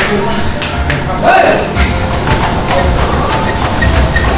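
Background music over footfalls thudding on treadmill belts during an all-out sprint, with a man's strained shout about a second in.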